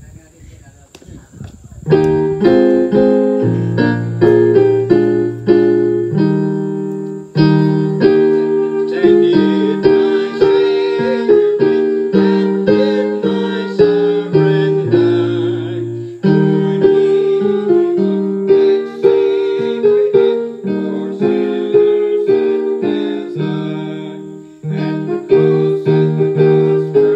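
Electric keyboard playing a hymn in piano chords and a melody, starting about two seconds in.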